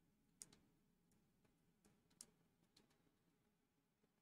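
Near silence with a few faint, scattered clicks and taps.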